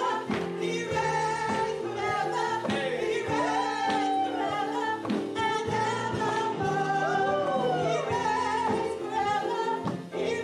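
Gospel singing by several voices through microphones, with steady instrumental backing. The voices slide up and down in runs, most plainly about four and seven seconds in.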